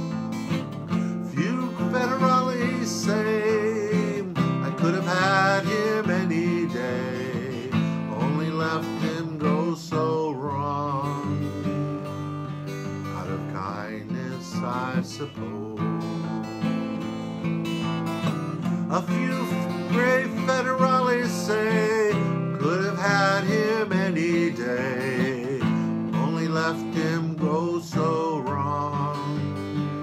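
Steel-string acoustic guitar strummed and picked through an instrumental outro, with a wordless, wavering vocal line carried over the chords.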